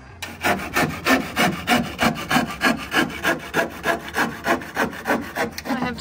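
A hand saw cutting through a thick rough-sawn wooden cladding board in steady, even strokes, about three a second, with the teeth rasping on each pass.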